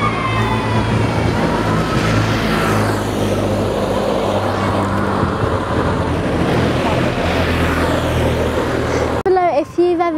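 Police escort motorcycles running as they pass along the street, in a steady loud street din with voices from the roadside crowd. Near the end it cuts suddenly to a girl speaking close by.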